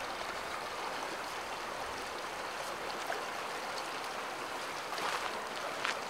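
Steady rushing hiss of water being forced through a Grayl GeoPress purifier cartridge as its press is pushed down, with a few faint clicks near the end.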